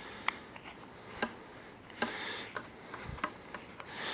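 Handling noise from a metal microscope lamp housing and its cord: light rubbing with a few sharp clicks, about five over the four seconds.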